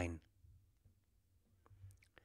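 A man's voice ends a word at the start, then a nearly silent pause broken by a few faint, sharp clicks.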